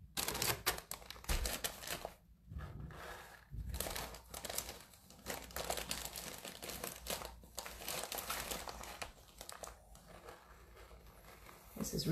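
Crinkling and rustling from handling a plastic bag of rice and a cloth sock: a long run of small irregular crackles that thins out near the end.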